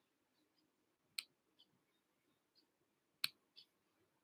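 Near silence broken by two short, faint clicks, one about a second in and one a little after three seconds.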